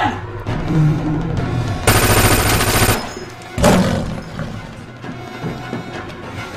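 A burst of rapid automatic gunfire lasting about a second, starting about two seconds in, over background film music. A single sudden bang follows about a second and a half later.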